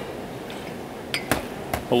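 Dishes being handled on a stainless steel counter: a few small knocks of a ceramic bowl set down among glass bowls and plates in the second half, over a steady low background noise.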